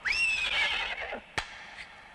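A horse neighing once: a high call that leaps up and then slides slowly down, fading out over about a second. A single sharp click follows about one and a half seconds in.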